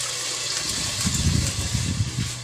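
Pork frying in hot oil in a pan, a steady sizzle, with low irregular rumbling in the second half.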